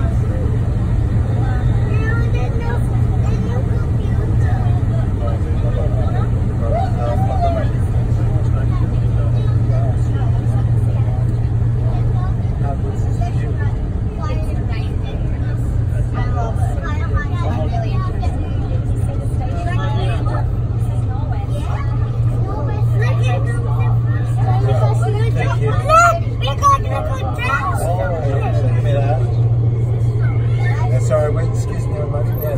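Sydney Metro train running through a tunnel, heard from inside the front of the carriage: a steady low hum with running noise, with faint passenger chatter over it.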